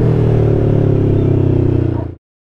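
Kawasaki Ninja 650's parallel-twin engine holding a steady note at cruise through a full custom exhaust with a Two Brothers muffler and silencer insert, freshly remapped with a Woolich Racing flash tune.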